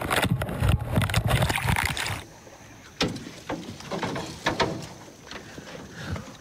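Water rushing and sloshing for about two seconds as a crab pot is hauled up into a small aluminium boat, then a few separate knocks and clunks as the pot is handled on board.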